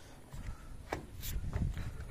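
Faint rubbing and handling noise with a few light knocks and clicks.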